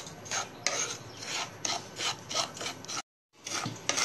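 A wooden spatula scrapes dry semolina around a non-stick pan as it roasts, in quick repeated strokes, about three a second. The sound cuts out completely for a moment near the end, then resumes.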